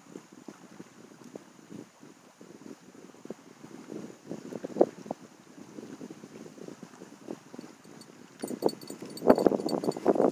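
Wind buffeting the microphone, with scattered rustles and small clicks as a catfish is handled in a landing net. Near the end come louder crunching steps on gravel.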